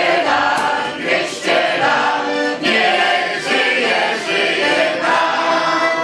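A choir of singers performing a song together, with an accordion playing along.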